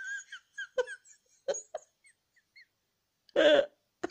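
A woman laughing: a high rising peal trailing off into short, faint giggles and breaths, then one louder burst of laughter near the end.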